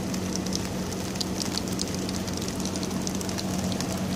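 Steady drizzling rain falling on the road and grass, heard through an open car window as an even hiss full of small drop ticks. A low steady hum of the car's idling engine runs underneath.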